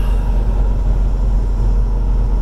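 Steady low rumble of a car driving at freeway speed, its engine and tyre noise heard from inside the cabin.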